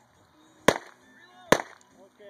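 Two .22 pistol shots, a little under a second apart, each a sharp crack. Neither sets off the exploding target.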